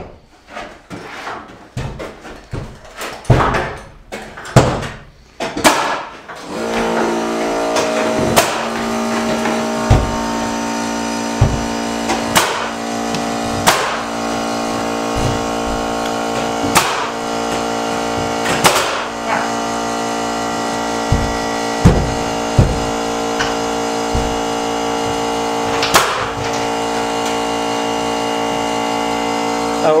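Pneumatic nail gun driving nails into wood framing, a sharp shot about every half second at first. About six seconds in an air compressor starts and runs with a steady hum, while more nails are fired every second or few.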